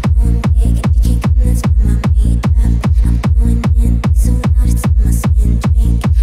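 Electronic techno dance track with no vocals: a steady, fast beat of punchy kick drums over a heavy bass line, with hi-hat strokes on top.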